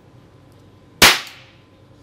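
An air pistol fired once: a single sharp, loud crack about a second in, with a short ringing tail.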